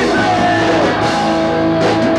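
Loud punk rock music with electric guitar and drums, playing without a break.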